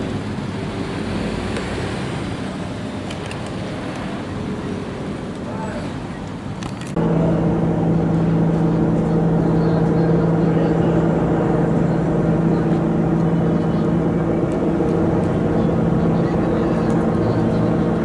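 Motor vehicle engine running: an even rumble at first, then, with a sudden jump in level about seven seconds in, a louder steady low engine hum that holds unchanged.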